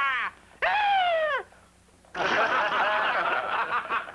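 Men shouting and laughing. A held shout ends at the start, a long cry falls in pitch about half a second later, and then a group of men laughs and hollers together for almost two seconds.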